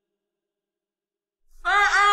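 Silence, then about one and a half seconds in a man's voice begins a melodic Quran recitation on a long, ornamented held note.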